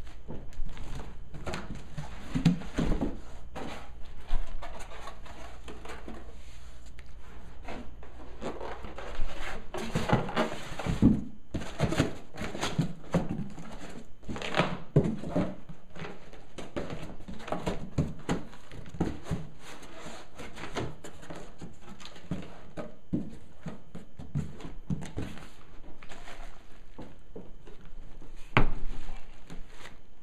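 Cardboard shipping box and plastic bag being handled as a heavy 15-inch subwoofer is lifted out: irregular rustling, scraping and thunks, busiest in the middle. A faint low hum stops about nine seconds in.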